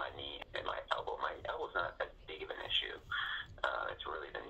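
Quiet speech: a person asking about their knee and elbow, then saying "it's really the knee."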